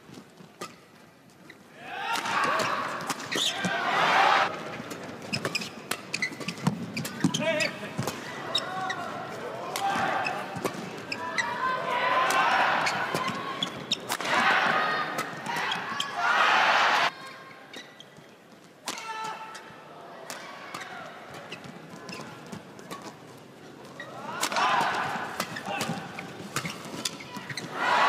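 Badminton doubles rally in a large arena: a string of sharp racket strikes on the shuttlecock, with the crowd shouting and cheering in swells between the exchanges.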